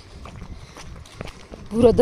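Faint footsteps of someone walking on a dirt road, soft scuffs at a walking pace; a voice starts speaking near the end.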